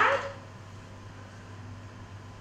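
The end of a spoken word right at the start, then quiet room tone with a steady low hum.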